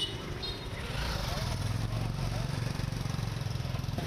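Street traffic: motorbikes and scooters running past with a steady low rumble, and faint voices in the background.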